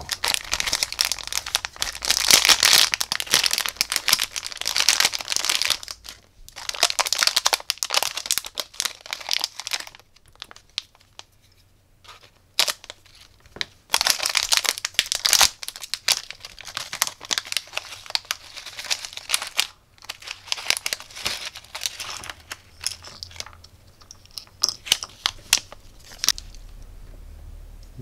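Plastic packaging crinkling and rustling as a small circuit-board module is unwrapped by hand. It comes in several bursts of dense crackling, then thins to scattered crackles and clicks as the board is handled in its clear plastic case.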